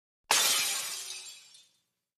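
Sound effect of glass shattering: one sudden crash just after the start, dying away over about a second and a half.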